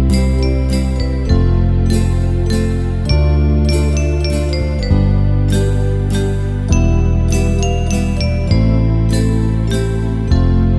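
Instrumental background music: sustained low chords that change about every second and a half to two seconds, with a high chiming melody stepping above them.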